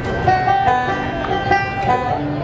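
Banjo played live through a stage PA, picking a string of plucked notes.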